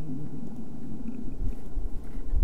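Steady low rumble with a faint hum, with no other clear event.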